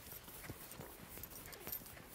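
Faint, irregular strokes of a chalkboard eraser wiping across a blackboard, several light swipes and knocks a second.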